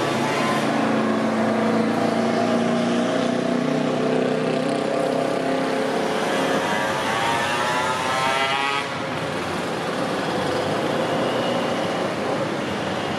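Road traffic: vehicle engines running over a steady rush of tyres. One engine climbs in pitch from about six seconds in and breaks off near nine seconds.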